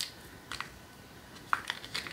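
Light clicks and taps of a small makeup compact and its little box being handled and opened in the hands: one at the start, one about half a second in, and three close together near the end.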